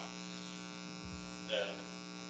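Steady electrical hum and buzz in the audio line, with one short spoken word about one and a half seconds in.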